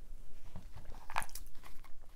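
Tarot cards being handled and shuffled close to a lapel microphone: a few soft clicks and rustles, the sharpest about a second in.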